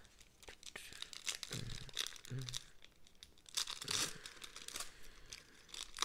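Foil wrapper of a 1992 Upper Deck baseball card pack being torn open and crinkled by hand, a run of crackling with louder bursts about a second and a half in and again around four seconds.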